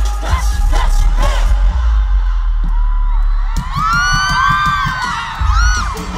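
Live pop song played loud through a concert sound system, with heavy bass and a steady beat. About halfway through, a crowd of fans breaks into high-pitched screams and whoops over the music.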